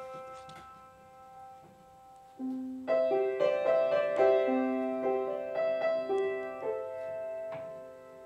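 Upright piano playing a song's introduction: a held chord rings and fades, then from about two and a half seconds in, a run of struck notes and chords.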